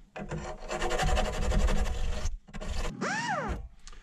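Hand file rasping back and forth on the worn, inward-curled steel end of a BMX peg, taking the lip down so a 17 mm socket can reach the axle nut. The filing runs for about two seconds, stops briefly, resumes, and about three seconds in there is a short tone that rises and falls.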